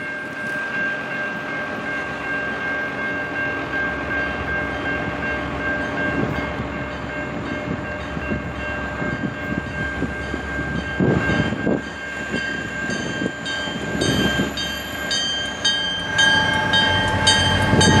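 Two EMD GP40-2 diesel locomotives hauling a passenger train approach, their engines growing louder over a steady high-pitched tone. From the latter part on, wheels clatter in a regular rhythm as the locomotives draw close.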